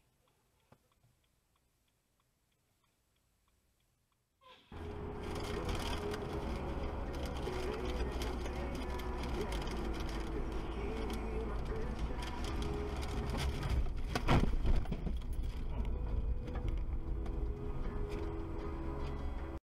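Near silence for about four and a half seconds, then a dashcam's recording of a moving car: steady low road and engine rumble from inside the cabin. About fourteen seconds in there is a brief loud thump as the car is struck by another vehicle.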